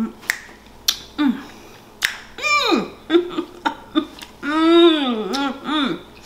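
Several sharp finger snaps, mostly in the first two seconds, with a woman's closed-mouth 'mmm' hums of enjoyment as she chews. The hums slide up and down in pitch, the longest near the end.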